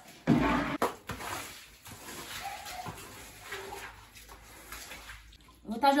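Water being pushed across a wet floor with a squeegee: irregular sloshing, swishing strokes, the loudest about half a second in.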